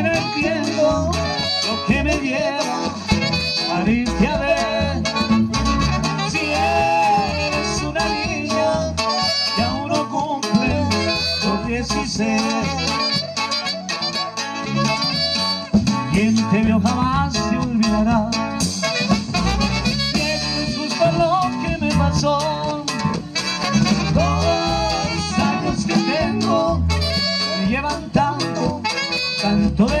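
Live norteño band playing a dance song: accordion and guitar over drums, with singing.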